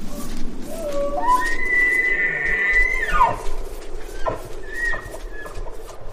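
Bull elk bugling: one call that climbs in steps to a high held whistle, then drops sharply about three seconds in, followed by a shorter high note near the five-second mark.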